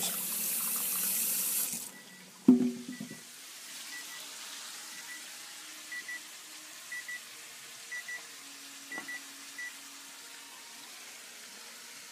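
Kitchen faucet running into a stainless steel sink, shut off about two seconds in, then a single loud thump. After that come short electronic beeps from a microwave keypad as its buttons are pressed, about one a second, over a faint low hum.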